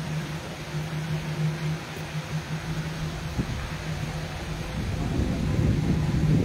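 A steady low mechanical hum over a noisy outdoor background, with rumbling noise growing louder near the end.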